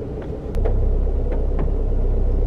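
Car engine heard from inside the cabin, a low steady rumble that sets in about half a second in as the car pulls forward.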